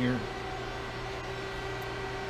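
Steady hum of a press brake's hydraulic pump running at idle, with a faint high whine over it. The machine is a Hoston 176-ton CNC press brake with a 14.75 hp pump, called a really nice quiet running machine.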